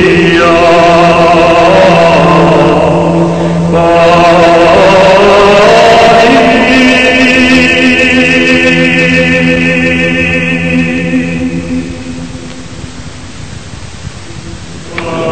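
Church choir chanting in long held notes over a steady low drone, the melody shifting pitch a few times before fading away near the end.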